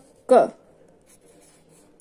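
A single spoken Hindi syllable, "ka", near the start, then faint scratching of a pen writing on notebook paper.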